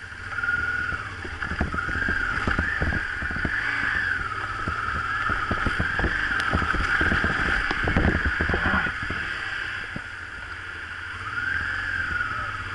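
Honda Transalp 600V's V-twin engine running as the motorcycle rides over a rough gravel and mud track, with a wavering high whine and frequent knocks from the bumps over low wind rumble on the microphone.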